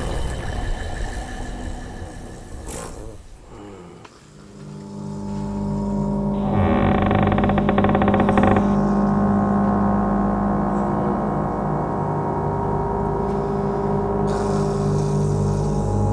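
Dark ambient film-score music: the passage fades to a low point about four seconds in, then a low sustained drone swells in and holds, with steady held tones above it and a brief brighter layer a few seconds later.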